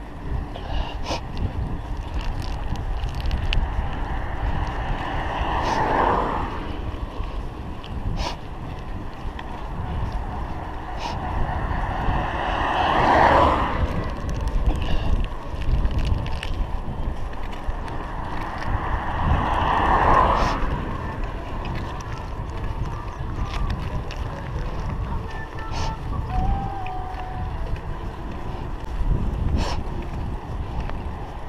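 Wind buffeting a chest-mounted action camera's microphone while riding a bicycle on a paved road, a steady low rumble. Three louder swells of noise rise and fall about seven seconds apart, with scattered faint clicks.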